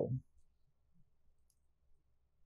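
A few faint, sparse clicks of knitting needles being worked, over near silence, after the last sound of a spoken word at the very start.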